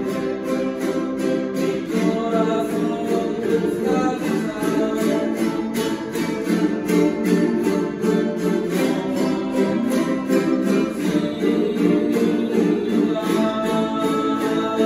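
Several jaranas, the small eight-string guitars of son jarocho, strummed together in a steady, rapid rhythm.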